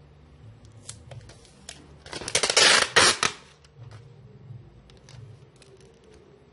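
Packing material being handled: a few light clicks, then a loud crackling rustle lasting about a second, with a brief break in the middle.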